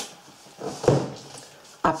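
A sharp click, then a brief rustle and knock of cardboard boxes being handled, with a short spoken word near the end.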